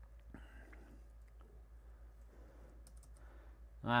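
Faint, scattered clicks of a computer keyboard as a number is typed in, over a low steady hum.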